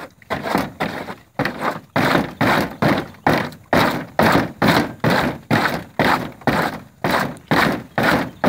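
A horse repeatedly banging a black plastic feed trough on its legs, a hollow thunk about twice a second, growing louder after the first second.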